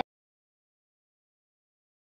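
Complete silence: the sound track is empty.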